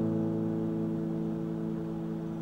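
A guitar chord ringing on with long sustain, its several notes held steady and slowly fading.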